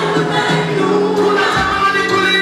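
Live gospel music: a man singing long held notes into a microphone, with other voices singing along.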